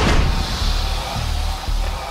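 Background music with a heavy bass line, over a rushing hiss that bursts in at the start and slowly fades: liquid nitrogen pouring from a spout into a tray and boiling off.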